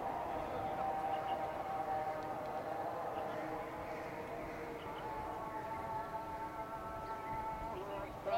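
A voice chanting or singing long, held melodic notes that glide slowly in pitch, moving to a higher note about five seconds in.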